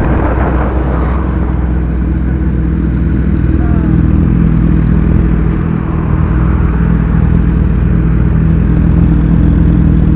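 Sport motorcycle engine idling steadily after slowing to a stop, with a low, even drone.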